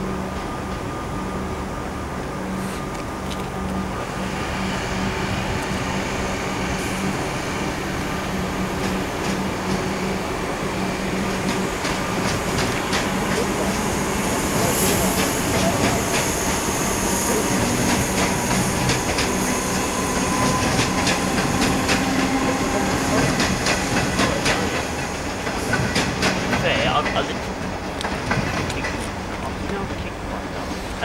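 Melbourne suburban electric train passing and pulling away, its wheels giving a rapid clickety-clack over the rail joints. The sound swells over the first half and is loudest, with the densest clacking, in the middle and later part.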